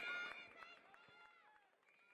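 Faint gliding tones from a logo intro sting's sound effect fade out within about half a second, followed by near silence.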